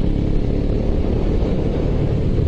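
Motorcycle ride heard through a helmet-mounted camera's microphone: a steady low rumble of wind buffeting over the running engine.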